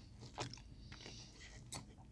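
Quiet chewing of a mouthful of spaghetti with meat sauce, with a couple of small sharp clicks, about half a second in and again near the end.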